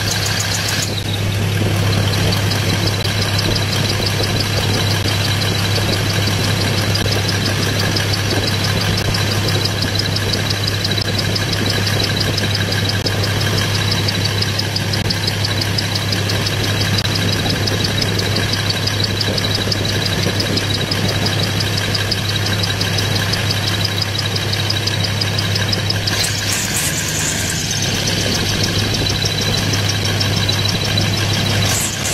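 A long-tail boat's big exposed stock bus engine running steadily under way, a constant low engine drone with no change in speed. A brief rush of hiss rises over it near the end.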